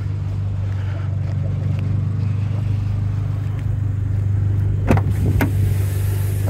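Abarth 595 Turismo's 1.4-litre turbocharged four-cylinder engine idling with a steady low hum. Two short sharp knocks come about five seconds in.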